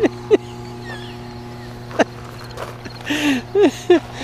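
A man laughing in short bursts at the start and again near the end, over a steady low electrical-sounding hum. A single sharp click about two seconds in.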